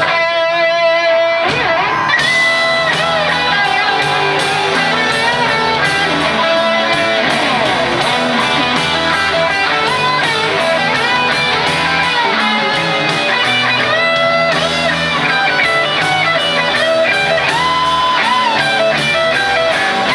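Live rock band playing an instrumental passage on electric guitars, bass and drums. For about the first second and a half the drums drop out under a held guitar note, then the full band comes back in with steady cymbal hits and bending guitar lead lines.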